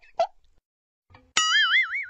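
The last honk of a rapid run of cartoon funny-horn toots right at the start. Then, about a second and a half in, a sudden cartoon boing sound effect: a ringing tone whose pitch wobbles quickly up and down as it fades.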